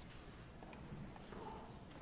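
Faint, soft footsteps of a man walking across the chancel floor, over the low room noise of a church sanctuary.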